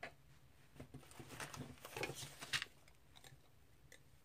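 Faint handling noise: a loose string of small clicks and rustles over about two seconds as a hand handles a braided knotting cord.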